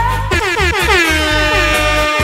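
Reggae dance mix with a DJ air-horn sound effect laid over it: a horn blast that sweeps down in pitch over and over, then settles on a held note, above a steady pulsing bass beat.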